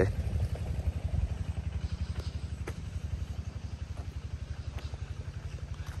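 A motor running at a steady speed, making a fast, even, low chugging, with a few faint ticks over it.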